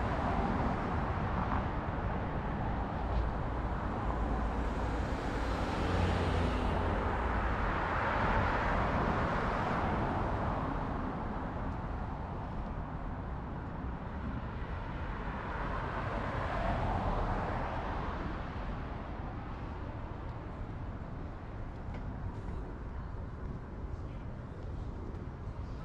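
Road traffic on a busy highway, cars passing in a steady stream. The noise swells as vehicles go by, loudest about six to ten seconds in and again around seventeen seconds.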